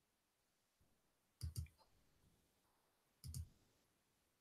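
Computer mouse clicked twice in quick pairs, about one and a half seconds in and again near three and a half seconds, against near silence.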